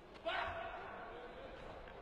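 A sudden loud shout about a quarter second in, starting with a faint thud, then sliding down slightly and fading over about a second.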